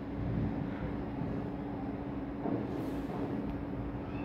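Steady background hum with a low rumble and a faint even hiss, holding one tone throughout a pause in the narration.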